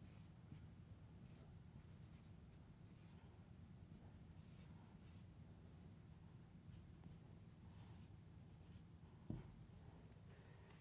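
Faint scratching of a marker writing on a whiteboard: short strokes every second or so, over a low steady hum. A single soft knock comes near the end.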